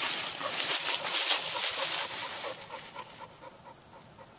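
Puppies wrestling on dry fallen leaves: leaf rustling and scuffling with quick panting, dying down over the last second or so.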